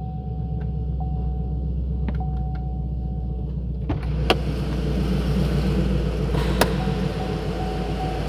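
A 2015 Chevrolet Camaro SS 1LE's 6.2-litre V8 idling steadily, heard from inside the cabin. A thin electronic chime tone sounds over it for the first few seconds and again near the end, with a few sharp clicks around the middle.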